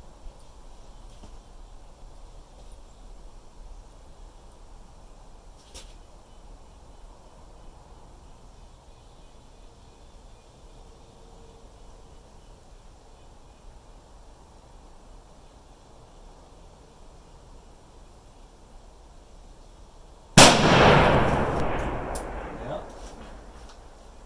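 A single .300 PRC rifle shot about twenty seconds in, a sharp blast whose echo rolls away over two to three seconds. Before it only faint, steady background noise.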